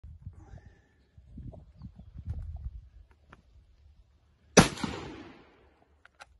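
A single shot from a Model 1895 Chilean Mauser bolt-action rifle in 7mm, about four and a half seconds in: a sharp crack whose echo fades over about a second.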